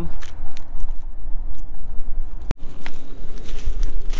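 Wind rumbling on the microphone while footsteps crunch through dry brush and twigs, with scattered small cracks and one sharp click about two and a half seconds in.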